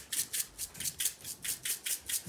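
Sprinkles rattling inside a plastic shaker bottle as it is shaken upside down in quick, even strokes, about five or six a second.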